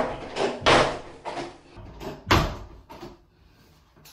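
Bathroom door banging and rattling in a small tiled room: about six loud thuds in the first three seconds, each dying away quickly, then quiet.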